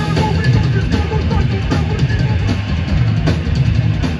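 Hardcore punk band playing live at full volume: a pounding drum kit and distorted electric guitars, heard from within the crowd in a club.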